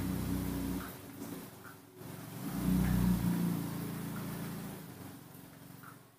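A motor engine running close by, swelling loud twice and fading out near the end, with a few faint short high squeaks over it.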